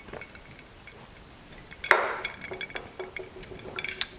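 A drink being sipped through a straw from a jar: faint sucking, then a louder slurp about two seconds in, followed by light clicks and clinks as the jar is handled.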